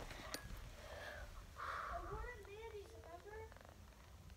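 A brief rustle about one and a half seconds in, then a faint human voice making a quick run of short wordless sounds that rise and fall in pitch.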